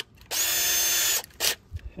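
Cordless drill motor spinning free with no load for about a second, then a brief second blip of the trigger.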